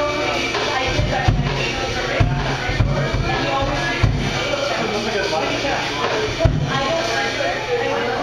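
A small live jazz group of upright bass, drum kit and trumpet playing, with several heavy low drum hits standing out, over voices in the room.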